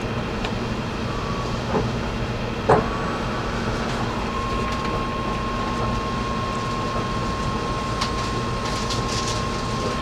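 Ride noise inside a moving electric commuter train: a steady rumble of wheels on the track, with a few sharp clicks and knocks, the loudest just under three seconds in, and a thin steady whine from about four seconds on.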